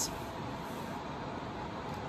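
Steady low background noise, an even hum and hiss with no distinct events.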